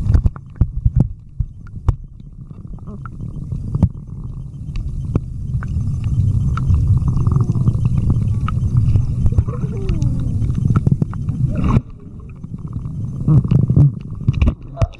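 Muffled, heavy low rumble of water and handling against a camera in a waterproof case, with scattered knocks, dropping away suddenly about twelve seconds in. Faint muffled voices come through under the rumble.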